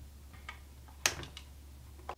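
A few light clicks from handling an electric guitar. The loudest is a sharp click about a second in, over a faint steady low hum.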